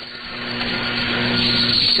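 Shortwave AM radio reception noise: a steady hiss of static that swells louder through a pause in the broadcast speech, with a few faint steady tones underneath.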